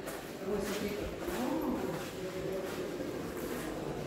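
Faint, indistinct voices of people talking in the background, over a low hum of room noise.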